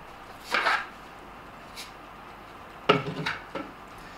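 Handling noise as a katana is picked up and brought into position: a brief scrape about half a second in, then a few light knocks and clicks around three seconds in.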